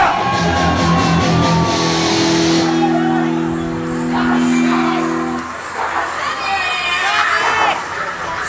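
Live psytrance set: a held synthesizer chord for about five and a half seconds that cuts off, followed by shouting voices from the crowd.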